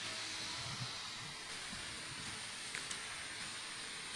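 Faint, steady hiss of room tone picked up by the church's microphone, with a few faint soft clicks and low knocks.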